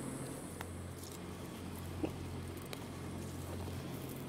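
Steady low mechanical hum from greenhouse heating equipment, with faint scattered clicks and one sharper click about two seconds in.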